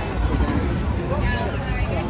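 Indistinct background voices and crowd chatter over a steady low rumble.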